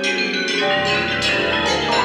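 Chamber-ensemble music scored for piano, synthesizer, violin, oboe, bassoons, French horns and double bass: a loud, dense passage of bell-like struck notes ringing together, with new strikes landing through it.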